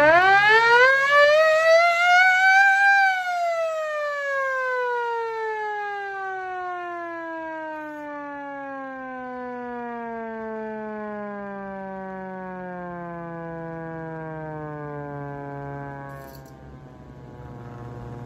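Vixen Horns handheld hand-crank siren wailing: its pitch climbs to a peak in the first three seconds, then winds down in one long falling tone that fades out about sixteen seconds in. A few faint clicks follow near the end.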